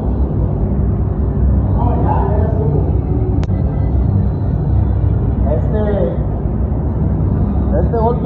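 Steady loud rumble of air and fans in an automotive paint spray booth while a car body is being sprayed. Short bits of voice come through twice, and there is one sharp click about three and a half seconds in.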